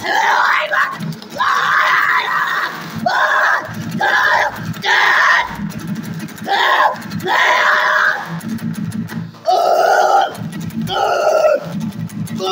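A man screaming hoarse, shouted vocals in short loud phrases while strumming an acoustic guitar. Near the end the voice settles into held, sung notes.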